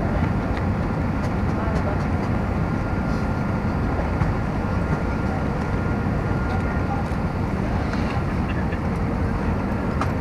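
Steady cabin noise of an Airbus A320 airliner on final approach: engine and airflow noise heard from inside the cabin, with a faint steady high whine.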